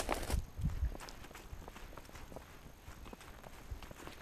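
Footsteps of a person walking outdoors with the camera on them, heavier in the first half second, then a run of soft, irregular steps.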